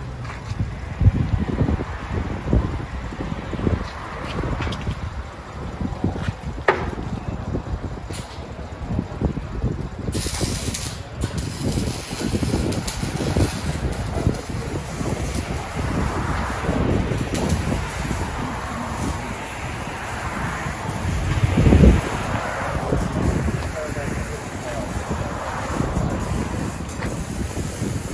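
2012 Jaguar XJ's supercharged 5.0-litre V8 running at low revs through a dual exhaust with both resonators removed, as the car rolls slowly in reverse. The exhaust swells louder once, about 22 seconds in.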